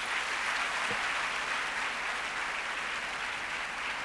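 Audience applauding steadily at the close of a speech.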